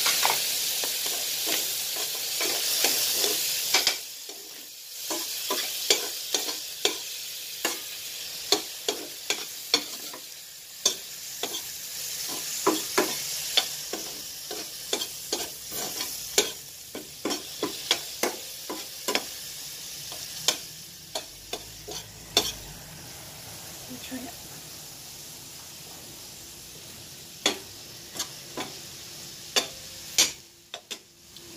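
Metal spoon stirring and scraping minced beef in a stainless steel skillet: many sharp clicks of spoon on pan over a steady sizzle. The sizzle is loudest for the first few seconds, and the clicks come thick and fast until about two-thirds of the way through, then only now and then.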